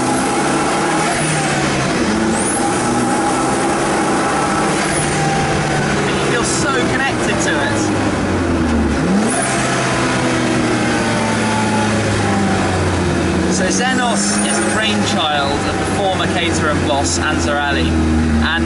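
Zenos E10 S's mid-mounted turbocharged Ford 2.0-litre EcoBoost four-cylinder engine under way on the road, heard from the open cockpit, its note climbing and dropping repeatedly with throttle and gear changes, dipping sharply about halfway through.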